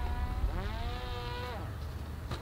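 Parrot Disco fixed-wing drone's rear pusher propeller and motor in flight: a smooth, steady hum like a small motorbike. Its pitch dips about half a second in, climbs back, then falls away and fades as the throttle comes off, with wind rumbling on the microphone.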